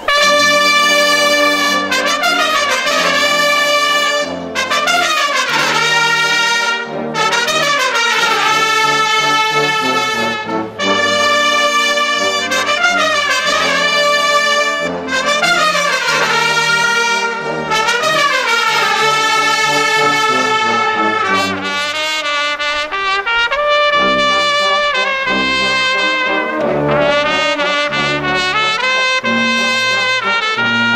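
Bersaglieri military brass fanfare playing live: massed trumpets and trombones coming in together and sounding loud, repeated descending phrases over held chords.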